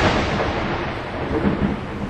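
Thunder sound effect on a title card: the tail of a thunderclap slowly fading away.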